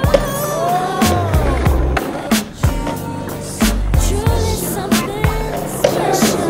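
Backing music with a steady beat and singing, over a skateboard rolling on pavement and clacking as the skater takes a trick onto a stair rail.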